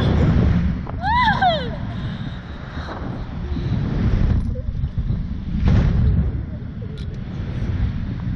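Wind buffeting the onboard microphone of a swinging Slingshot reverse-bungee capsule, a steady low rumble. About a second in, a child gives a short whoop that rises and falls in pitch.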